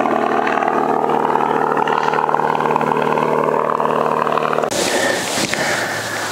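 A light propeller aircraft flying overhead: a steady engine drone with a propeller hum. It cuts off abruptly near the end and gives way to a steady hiss.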